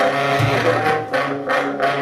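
Free-improvised jazz trio of tenor saxophone, bowed double bass and archtop guitar playing together, dense and unmetred, with a series of short sharp attacks over a low bowed bass line.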